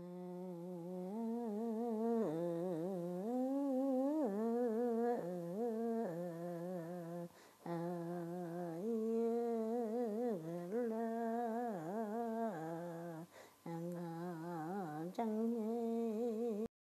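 A lone voice humming a slow, unaccompanied tune with a wavering pitch, breaking off for a breath about seven and a half seconds in and twice more near the end.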